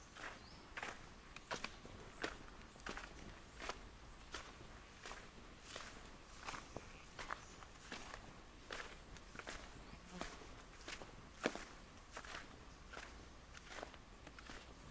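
Footsteps of a person walking at a steady pace over dry sandy dirt and grass, about three steps every two seconds. One step a little past the two-thirds mark is sharper and louder than the rest.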